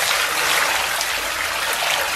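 Cold water poured steadily from a stainless steel basin into a large pot, splashing over raw beef rib chunks, with a continuous rush.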